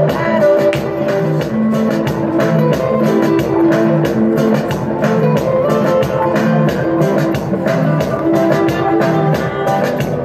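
Dance music with a steady drum beat and guitar, played over loudspeakers.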